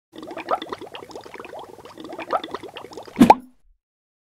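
Animated logo sound effect: a rapid run of short, bubbly plops, each rising in pitch, ending in one louder rising pop about three seconds in, after which the sound cuts off.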